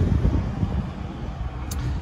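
Wind rumbling unevenly on the microphone, with a faint click near the end.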